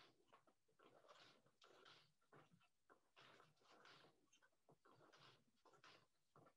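Very faint sounds of weaving at a Schacht Baby Wolf four-shaft floor loom: a wooden shuttle passed through the warp and the beater pulled, a string of soft, irregular brushing and knocking sounds.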